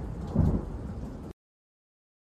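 Rolling thunder sound effect at the tail of a radio station ident, fading with a second low swell about half a second in, then cut off abruptly to silence a little over a second in.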